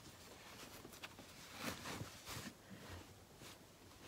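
Faint rustling and soft brushing of cloth pages as a handmade fabric stitch book is handled and folded shut, a little louder about two seconds in.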